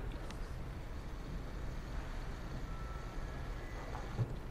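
A pause in the music in a concert hall: a low, steady room rumble with faint rustling and a few small clicks, and a faint brief tone about three seconds in.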